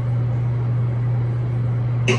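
A steady low hum with a faint even hiss above it, unchanging throughout.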